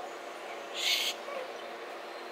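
A short hiss about a second in, lasting under half a second, over a quiet steady background.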